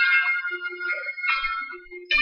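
Karaoke backing track playing an instrumental passage between sung lines: sustained melodic notes with a bright, bell-like or keyboard-like tone that thin out and die down near the end.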